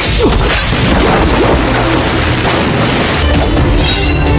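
Martial-arts film fight soundtrack: loud crashing and whacking impact effects mixed over music.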